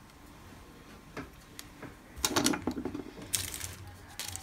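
Hands handling small nail-art supplies on a tabletop: a single click about a second in, then a quick cluster of sharp clicks and rustles after about two seconds, and more near the end.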